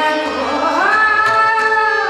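Hindustani classical female vocal: the voice glides upward under a second in and holds a long note over a steady drone, with tabla accompaniment.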